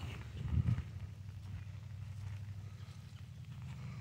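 A calf's hooves stepping over wet pasture grass as it comes closer, over a steady low rumble, with a louder low sound about half a second in.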